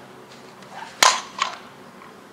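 A softball bat striking a pitched softball once, a loud sharp crack about a second in, followed by a weaker second crack about half a second later.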